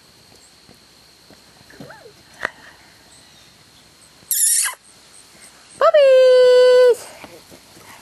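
A sharp, hissy burst a little past four seconds, then a loud, long cry held on one pitch for about a second near six seconds in, with faint short whimpering sounds earlier.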